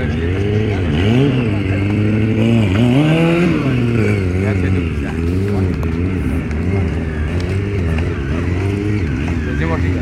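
Sport motorcycle engine revving up and down as the stunt rider works the throttle through a wheelie. The pitch rises sharply about a second in and again around three seconds in, then wavers up and down.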